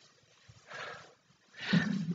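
A woman's breathy exhale, then a short, rough voiced sigh near the end.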